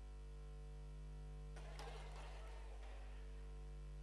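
Faint steady electrical hum from the sound system in a pause between speech. From about a second and a half in, a faint, low stir of noise from the seated hall audience is added.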